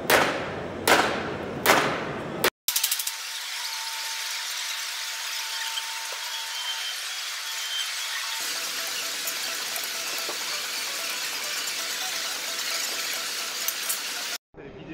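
Sheet-metal shaping by hand: three loud, ringing blows on a metal panel, about a second apart. Then, after a short break, a steady high hissing, squealing metallic noise carries on.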